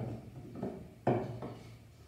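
Small LEGO models knocked and set down on a robot-competition mat over a wooden table: a couple of short knocks, the louder one about a second in.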